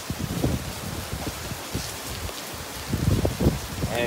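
Heavy rain pouring down in a steady hiss, with irregular low surges of noise underneath.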